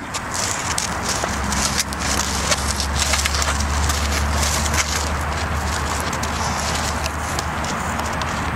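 Steady low rumble of outdoor background noise with faint scattered clicks and no distinct event.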